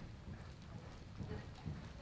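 Hoofbeats of a palomino horse loping on the dirt footing of an indoor arena, a run of low, soft thuds.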